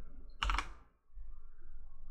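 Keys pressed on a computer keyboard: a short, sharp keystroke sound about half a second in, typing digits into the puzzle grid.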